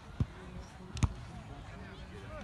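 Two hits on a volleyball by hand, about a second apart: a dull thud, then a sharper smack.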